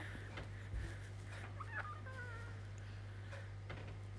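Quiet room tone with a steady low hum, and a faint, short wavering call about two seconds in.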